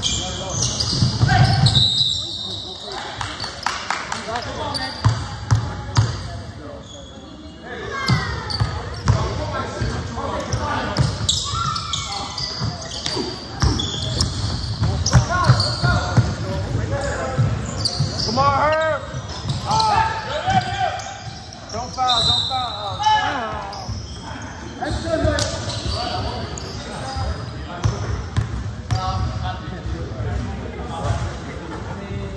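Basketball game in a gym: a ball bouncing on the hardwood court, short high squeaks in the middle stretch, and players' voices calling out, all echoing in a large hall.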